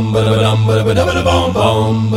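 Multitracked a cappella male voices: a steady low bass drone held under several layered vocal parts that change notes every fraction of a second.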